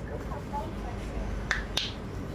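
Two sharp clicks about a quarter-second apart, a little past halfway, over the low steady rumble inside a Mercedes-Benz Citaro G articulated bus standing at a red light.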